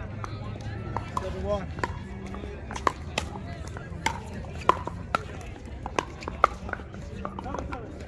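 Pickleball paddles hitting the hard plastic ball: a string of sharp, irregular pops, getting stronger from about three seconds in, over a steady low hum.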